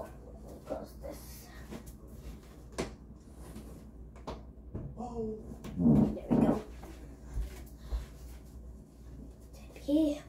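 A room door being swung shut, with a pitched creak for about a second around six seconds in, amid scattered light knocks.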